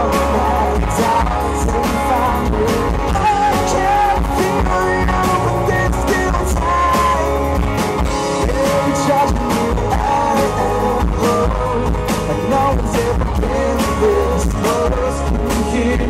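Live rock band playing a song, with singing over electric bass, guitars and a steady drum beat.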